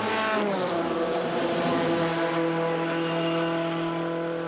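Formula 3 race car engine coming off the throttle as the car pulls into the pits, its pitch falling through the first second, then running at a steady idle. The car has been brought in because something is wrong with the engine.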